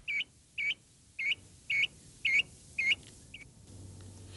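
A bird calling the same short chirp over and over, about two a second, seven times, each call dipping and then rising in pitch; the last call is cut short.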